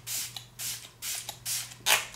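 A fine-mist pump bottle of Smashbox Primer Water spritzed onto the face about five times in quick succession, each spray a short hiss.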